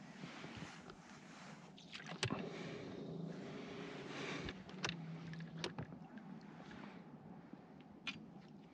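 Faint handling noise from fishing tackle in an inflatable boat as line and rod are worked, with a few sharp clicks.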